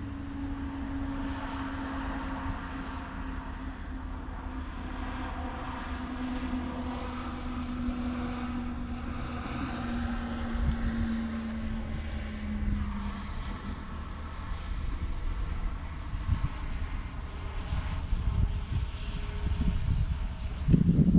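An airplane passing over, its engine drone slowly falling in pitch and fading out about two-thirds of the way through. Wind rumbles on the microphone throughout.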